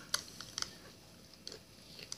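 Granulated sugar poured into a glass mixing bowl, heard as a few faint, scattered ticks over a light hiss.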